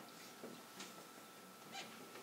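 Near silence: room tone with a faint steady high whine and two faint brief ticks about a second apart.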